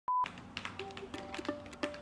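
A brief steady test-tone beep, then intro music starts: short plucked notes over a steady pulse of sharp clicks.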